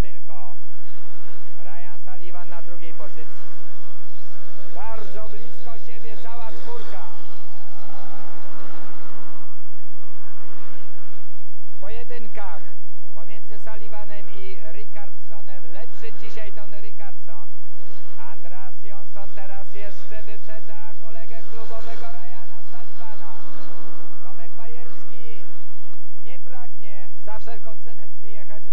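Speedway motorcycles' 500 cc single-cylinder methanol engines racing, their pitch rising and falling over and over as the riders throttle through the bends.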